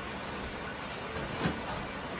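Steady background noise in a kitchen while pots cook on the stove, with one soft knock about one and a half seconds in.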